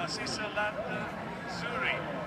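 Faint, indistinct speech from a track-and-field broadcast playing through a laptop's speaker.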